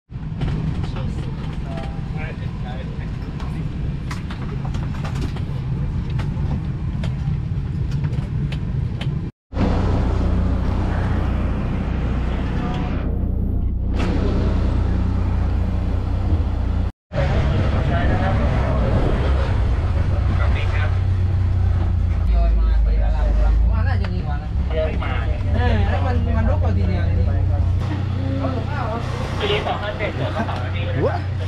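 Steady low engine drone of travel, first inside an airliner cabin, then aboard an airport apron shuttle bus, its engine rumbling louder a little past two-thirds through. The sound drops out abruptly twice, and indistinct voices are heard in the later part.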